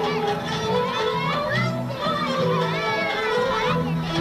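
Traditional folk music with voices calling and shouting over it, loud and continuous.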